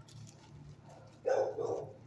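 A dog barking in a shelter kennel block: one short double bark a little past halfway through, over a steady low hum.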